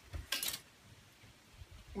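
A short knock and rustle about a quarter-second in as a kitchen knife is set down on the table and a plastic tub of pineapple is picked up; otherwise only quiet background.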